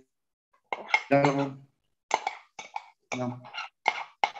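A man's voice in short, broken fragments coming over a video-call link, too garbled for words to be made out.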